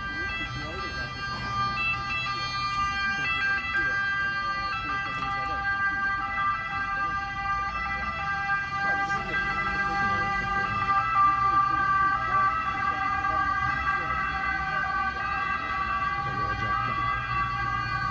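A continuous high-pitched alarm-like tone with overtones, holding one pitch, over low street noise.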